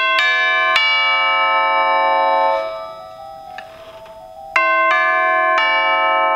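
Orchestral chimes (tubular bells) struck with a chime hammer: two short three-note figures, about four and a half seconds apart. Each figure rings in long, bright bell tones and is then cut off abruptly.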